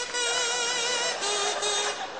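Kazoo playing a tune in held buzzing notes, the pitch stepping down about a second in.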